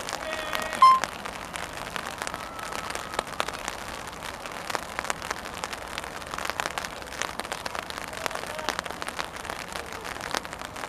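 Light rain pattering close to the microphone: a dense, irregular crackle of drops. A short, loud beep cuts in about a second in.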